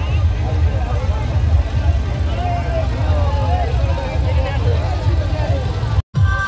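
Busy street crowd with traffic: many indistinct voices and calls over a steady low rumble of vehicles.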